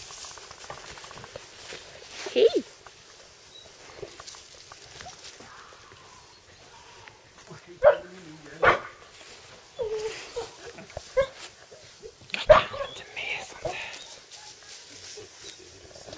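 A dog barking in short single barks, spaced a second or more apart, with the loudest near the middle of the stretch.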